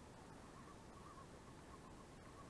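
Near silence: faint outdoor background, with a few faint soft calls from a distant bird.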